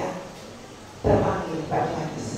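A woman's voice speaking into a microphone: one utterance starting about a second in, after a short pause.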